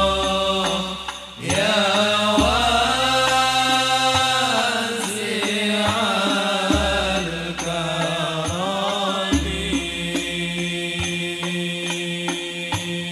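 Several men's voices chanting Arabic sholawat in unison through microphones, in long, slowly gliding held lines, with a short breath pause about a second in. Near the end, light regular strokes of banjari frame drums (terbang) come in under the singing.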